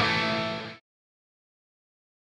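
Overdriven electric guitar lead through a Big Joe Vintage Tube overdrive pedal into a PT100 amp's dirty channel, a held distorted note ringing out. It cuts off abruptly less than a second in.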